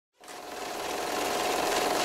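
Intro sound effect on an animated title card: a grainy rushing noise with a faint steady hum that swells steadily louder after a brief silent start.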